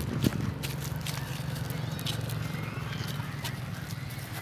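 A toddler's small shoes stepping on dry fallen leaves and grass, giving light, irregular crackles and crunches over a steady low hum.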